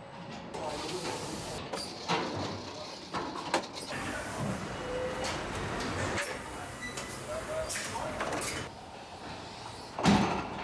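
Machinery of an automated tyre-mounting station on a car assembly line: a steady hiss with scattered clanks and clicks.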